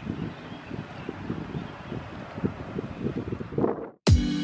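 Wind buffeting the microphone, a low, irregular rumble of gusts that fades out near the end.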